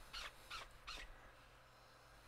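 Fingers rubbing at a clear acrylic stamp block with a rubber stamp mounted on it: three faint, short rubbing strokes in the first second.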